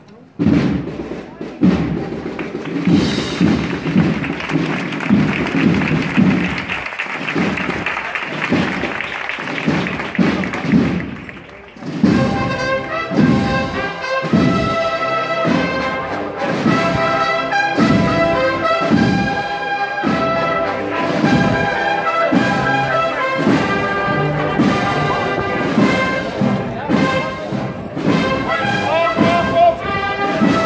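Cornet-and-drum procession band playing a march: the drums start it alone with regular beats under a steady rattle, then the cornets come in about twelve seconds in and play the melody over the drums.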